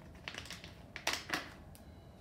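A plastic die-cut packaging bag crinkling as it is handled, in a few short bursts, the two loudest a little over a second in.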